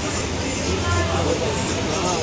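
Men's voices talking faintly in the background over a steady low hum.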